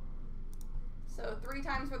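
A few faint clicks of a computer keyboard and mouse over a low steady hum. A man's voice starts a little past halfway.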